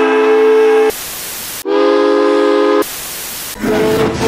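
Virginia & Truckee No. 29's steam chime whistle sounding two blasts of about a second each, a chord of several tones, with a steam hiss between them. Near the end a rougher, wavering train sound begins.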